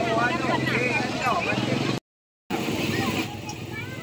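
Crowd of many people talking at once, with a steady low hum underneath. The sound drops out completely for about half a second midway, then the chatter resumes.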